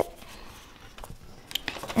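A square of origami paper folded into a triangle and creased flat by hand: faint rustling, with a few short crackles in the second half.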